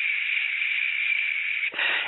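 A man voicing a long, steady hiss with his mouth, imitating the small jet noise of a model airplane coming toward him; it stops abruptly near the end.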